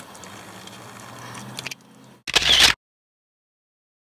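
Faint steady outdoor background with a few light ticks. Just over two seconds in comes a brief loud burst of noise, which is the loudest sound here. It cuts off suddenly into dead silence where the recording was stopped.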